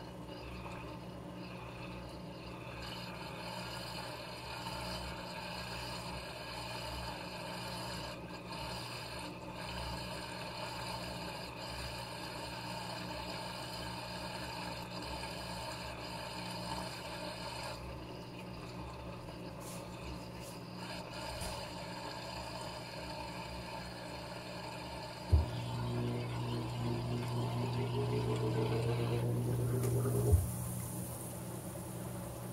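Panasonic 16 kg top-load washing machine running with a steady mechanical hum while the drum stands still. About 25 seconds in, a sharp click comes as the spin motor engages, and then a strong low hum and a rising whine as the drum quickly picks up speed for the spin cycle.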